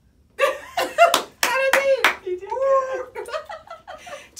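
Women laughing and exclaiming, with a few sharp hand claps or smacks between about one and two seconds in.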